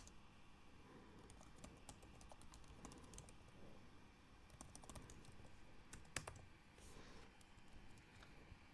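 Faint typing on a computer keyboard: irregular key clicks in quick runs.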